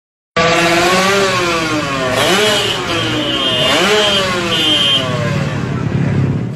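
Vehicle engine revved up and down several times over a loud rushing noise. It starts abruptly about a third of a second in.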